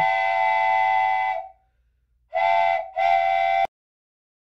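Wooden train whistle blowing a chord of several tones: one long blast that fades out, then after a short gap two quick toots, the last one cut off suddenly.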